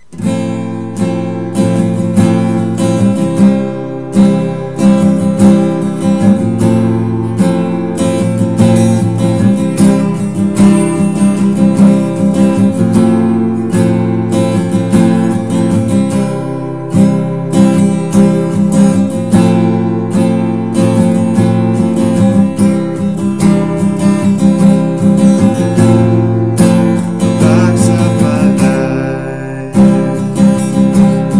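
Acoustic guitar strummed in a steady rhythm, starting suddenly.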